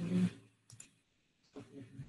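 Faint, low speech with a near-silent gap, broken by two short clicks about three quarters of a second in.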